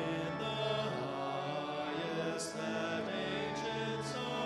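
Congregation singing a hymn with sustained accompanying chords. The sung 's' sounds of the words cut through a couple of times.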